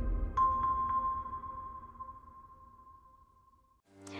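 The close of an electronic intro jingle: a single clear chime struck about a third of a second in rings on and slowly fades away over about three seconds, while the music under it dies out to near silence.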